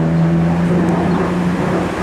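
A road vehicle's engine humming steadily in traffic, fading out near the end.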